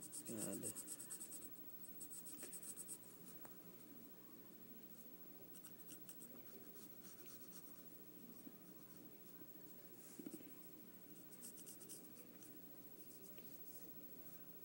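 Faint pencil scratching on lined paper as maze lines are drawn, in several spells of quick strokes.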